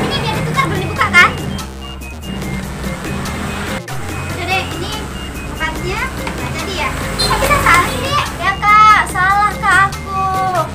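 High-pitched voices, like children's, speaking and calling over steady background music, busiest near the end.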